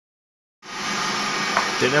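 Kitchen robot's motor running steadily at speed, beating eggs and sugar; it cuts in abruptly about half a second in.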